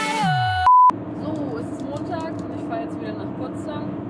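Background music winds down to a stop, its pitch dropping. A short, high, steady beep follows and is the loudest sound. Then comes the steady hum of a car interior while driving, with a voice over it.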